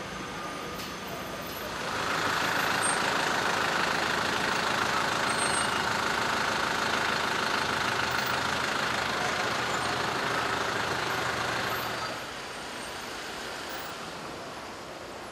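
A motor vehicle running close by: its noise rises about two seconds in, holds steady, and drops back near the end to a lower background hum.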